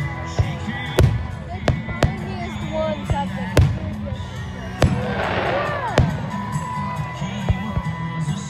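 Aerial firework shells bursting overhead in a string of sharp bangs, about eight in eight seconds, over music and crowd voices.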